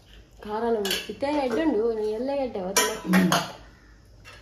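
A woman's voice with pitch bending up and down, broken by a few sharp metallic clinks of kitchen utensils, the loudest just before the end.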